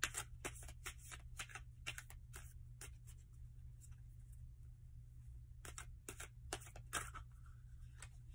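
Tarot cards being shuffled by hand: quick, faint card flicks and clicks, a run of them over the first three seconds and another about six seconds in, with a quieter stretch between. A steady low hum runs underneath.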